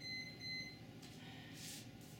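Two short electronic beeps in quick succession, a single steady high pitch, followed about a second later by a brief soft hiss.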